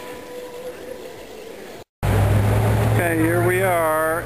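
Quiet outdoor hiss with a faint steady tone, cut off abruptly about halfway through. Then a loud steady low hum of road traffic, and near the end a person's long, drawn-out vocal call wavering in pitch.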